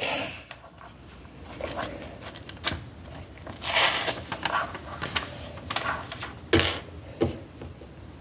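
Plastic LEGO pieces clicking and rattling on a tabletop, with the rustle of the paper instruction booklet's pages being turned. The clicks are scattered and irregular, with one sharper knock near the end.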